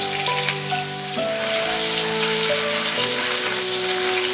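Sliced scallion, ginger and garlic sizzling steadily in hot oil in a wok as they are stir-fried to bring out their fragrance, with soft background music underneath.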